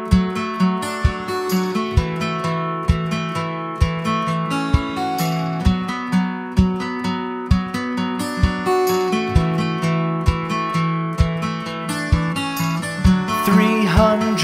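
Background music: an acoustic guitar picking notes at an even pulse, about two a second, as the instrumental introduction to a song.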